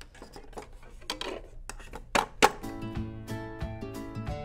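Plastic clicks and knocks of a CD being loaded into a portable CD boombox, with two loud snaps a little over two seconds in as the lid is shut and the player started. Music then starts playing.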